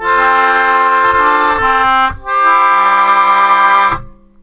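Melodica playing a plagal cadence: two held chords, the IV chord resolving to the I chord, with a brief gap between them about two seconds in.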